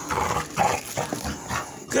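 American Staffordshire terrier making rough play noises in several short bursts while tugging at a rubber toy ball.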